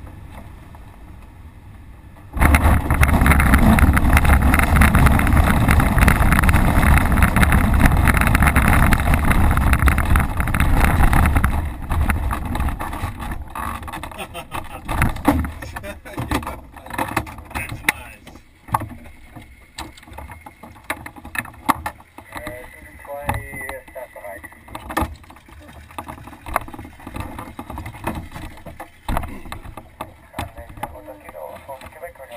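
ASK-21 glider's main wheel touching down on a grass runway about two seconds in: a sudden loud rumble and rattle through the airframe that holds for several seconds, then fades as the glider slows to a stop. Scattered clicks and knocks follow.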